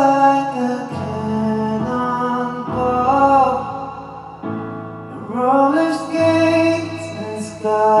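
A male voice singing a slow ballad into a handheld microphone over a backing track, holding long notes with some wavering of pitch. The music thins out around four to five seconds in, then the voice swells again.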